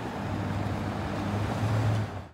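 City street traffic noise, with a vehicle's low engine hum swelling slightly near the end.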